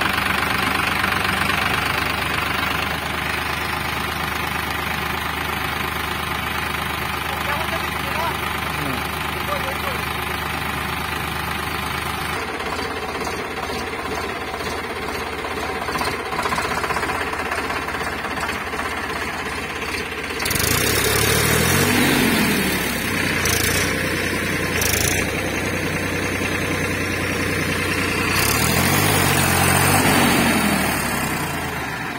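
Eicher 5660 tractor's diesel engine running steadily, then about two-thirds of the way through it is revved up and down twice under load as the tractor tries to drive out of deep mud.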